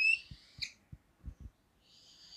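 Felt-tip marker squeaking on a whiteboard as lines are drawn: a short high squeak right at the start and another brief one about half a second in, with faint soft knocks after.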